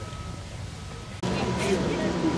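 Outdoor background with distant voices: a low, quiet murmur that jumps abruptly louder a little past halfway, followed by a brief high-pitched chirp.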